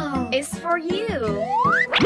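Cartoon-style voice sounds without words, their pitch sliding up and down and ending in one long rising glide, over light background music.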